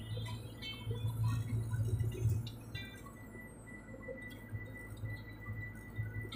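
Low, steady hum of a vehicle's engine and road noise heard inside the cabin, with faint chiming tones from the radio in the first half. A thin, steady high tone runs from about halfway through.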